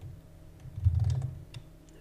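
A few clicks of computer keyboard keys, with a low muffled thump about a second in.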